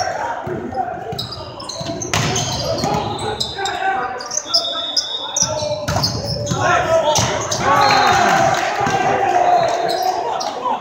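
Volleyball rally on an indoor hardwood court, echoing in the gym: sharp ball contacts, with hard hits about two seconds in and again about six seconds in, sneakers squeaking on the floor, and players calling out.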